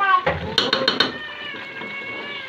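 A spoon tapping four or five times against a cooking pot about half a second in. This is followed by a long, steady, high-pitched cry that falls slightly in pitch.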